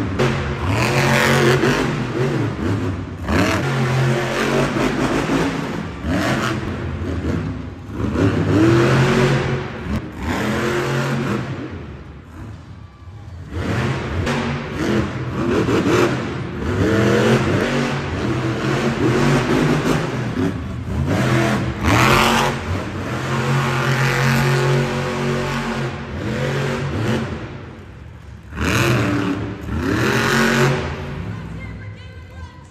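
Monster truck's supercharged V8 engine revving hard again and again, its pitch climbing and falling with each burst of throttle. It eases off briefly about twelve seconds in and again near the end.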